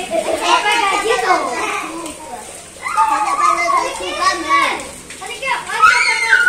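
Young children's high-pitched voices shouting and calling out as they play, in bursts with brief lulls.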